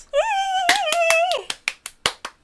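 A high-pitched, wavering squeal of delight with laughter lasting about a second, then rapid hand clapping, about six claps a second.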